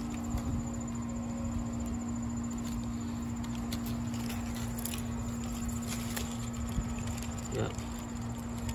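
A steady low hum of two close tones over a low rumble, with faint scattered clicks and rustles as leaves brush past the microphone.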